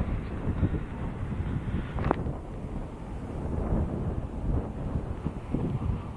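Wind buffeting the phone's microphone, a low fluctuating noise, with a single sharp crack about two seconds in.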